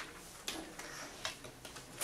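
Chalk writing on a chalkboard: a run of sharp, irregular taps and short scrapes as the stick strikes and drags across the board.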